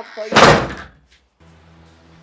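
A front door slammed shut: one loud bang about half a second in.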